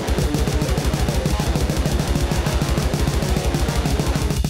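Extreme-metal instrumental passage: very fast, even drumming at about ten hits a second under dense distorted guitar, with no vocals.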